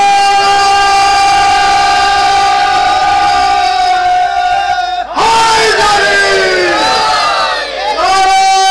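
A boy's high singing voice holds one long steady note for about five seconds in a sung Urdu qasida, breaks off, slides down through a falling phrase, and starts another long held note near the end.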